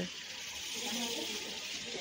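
Shop background: faint chatter of other shoppers' voices over a steady hiss.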